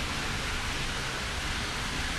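A steady, even hiss of background noise with no voice, unchanging throughout.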